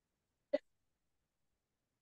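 Near silence, broken once about half a second in by a very short vocal sound, a hiccup-like catch in the throat.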